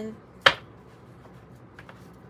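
A deck of tarot cards being handled: one sharp snap of the cards about half a second in, then a few faint card ticks near the end.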